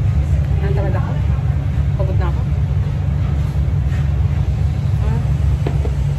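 Commercial kitchen extraction hood fan running with a steady low rumble, with faint voices over it.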